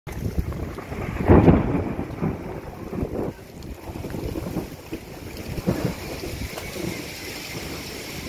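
Strong storm wind blowing in gusts and buffeting the microphone, loudest about a second and a half in, with smaller gusts later.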